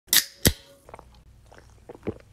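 Two sharp knocks about a third of a second apart, right at the start, followed by a faint ringing tone and a few small clicks.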